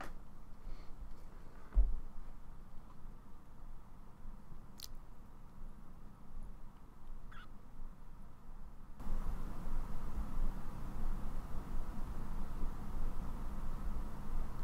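Quiet background hum and hiss on a workbench, with a soft thump about two seconds in and a faint click near five seconds; the background noise grows louder about nine seconds in.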